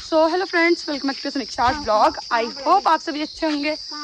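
A steady high-pitched drone of insects, with a woman talking over it almost without pause.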